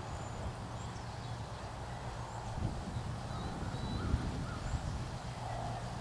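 Outdoor ambience: a steady low hum with a few faint, brief bird calls over it.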